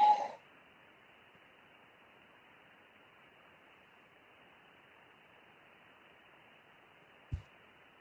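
Faint steady hiss with nothing above about 3 kHz, typical of a 6 m radio receiver's audio on an empty channel, with one short low thump about seven seconds in.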